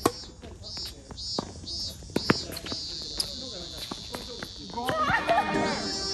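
Tennis ball struck back and forth during a doubles rally: four sharp hits roughly a second apart, the third the loudest. Players' voices call out near the end.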